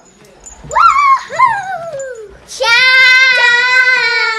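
Young girls' voices: a wavering, sliding call in the first half, then a long, loud, held high shout. Small hanging bells tinkle faintly near the start.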